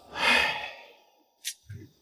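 A man sighing: one long breath out lasting under a second, followed by a short sharp click and a soft low mouth sound near the end.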